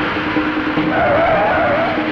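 Action-scene film score: a held low note under a dense rushing noise, with a wavering high tone over the second half.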